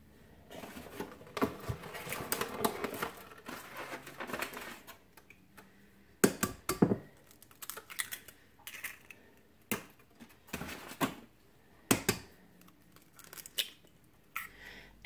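Raw eggs being cracked open one after another: sharp taps of shell against a hard edge, each followed by the crackle of the shell being pulled apart.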